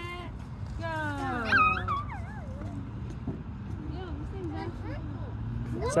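Children squealing and calling out in high, gliding voices as they spin on a playground merry-go-round, loudest about a second in. A low steady rumble runs underneath.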